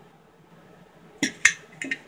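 A quick cluster of sharp clicks about a second and a quarter in, the second the loudest, from an old Colt 1911 pistol and its magazine being handled.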